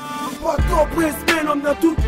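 Hip hop track with a rapped vocal over a beat; a deep bass kick comes in about half a second in.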